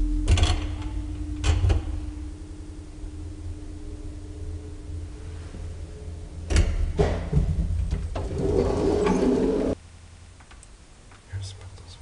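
Luth & Rosén elevator machinery running with a steady hum that stops about five seconds in. Then come two clunks and a rushing, sliding noise that cuts off sharply, as the car halts and its door is worked.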